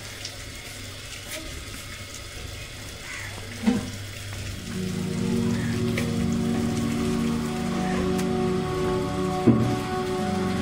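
Knocks of a steel cleaver on a wooden chopping block, one a few seconds in and another near the end, over a light crackly noise. About halfway through, background music with sustained tones comes in and carries on.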